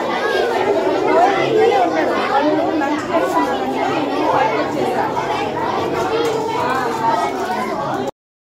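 Crowd chatter: many voices talking over one another at once, children's among them, in a large room.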